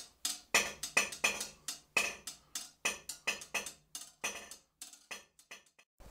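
A boning knife being honed on a butcher's steel: a quick run of sharp, ringing strokes, about three a second, growing fainter over the last second or two.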